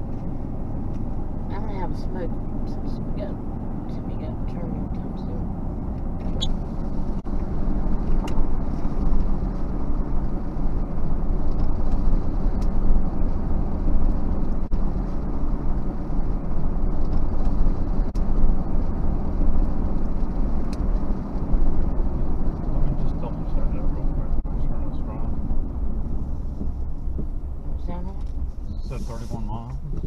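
Steady road and engine noise inside a moving car, a low rumble that grows louder through the middle stretch and eases off near the end.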